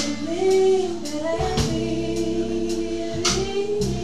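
Live band performing a song: a woman singing long, gliding notes into a microphone over electric guitar, keyboard and drums, with cymbal hits marking a steady beat.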